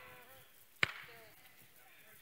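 A single sharp click or knock about a second in, over faint room sound.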